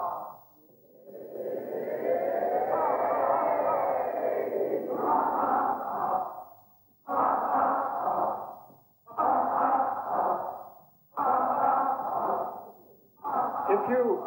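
Actors' voices making wordless, sustained vocal tones in a reverberant hall. First comes one long gliding sound with several pitches overlapping, then four separate held notes about two seconds apart, each starting sharply and dying away.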